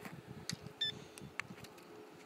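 A few faint, sharp clicks and knocks, with a brief high chirp a little under a second in, over a faint steady hum.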